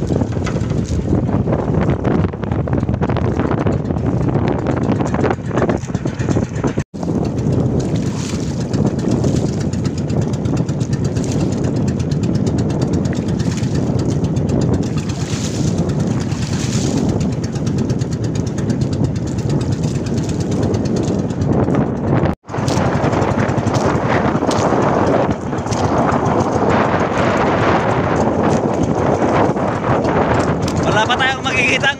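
Motorized outrigger boat under way at sea: its engine runs steadily under wind buffeting the microphone and water rushing along the hull. The noise cuts out briefly twice.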